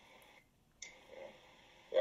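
A pause in a spoken conversation: faint recording hiss that drops out completely for a moment and comes back just under a second in, with a faint low murmur shortly after.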